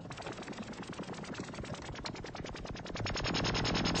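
Moog synthesizer sounding a rapid, modulated rattle of percussive noise clicks. The clicks settle into an even, fast pulse and get louder and brighter about three seconds in.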